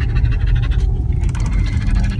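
Car cabin noise while driving slowly: a steady low rumble of the engine and tyres heard from inside the car.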